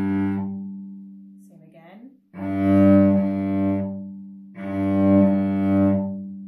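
Cello bowing a low note in broken slurs: each stroke starts strongly, is stopped by the bow and dies away before the next. There are three of them, the later two starting a little over two seconds apart.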